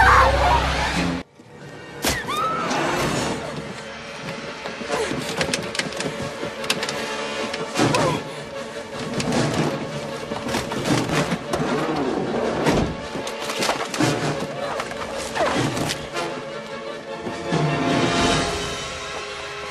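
Tense horror film score laced with sharp stings and thuds. It cuts out suddenly about a second in, then resumes.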